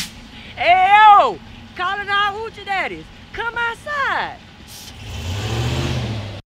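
A person shouts three long hollers that rise and fall in pitch, over a pickup truck's idling engine. Near the end the engine rises as the truck pulls away.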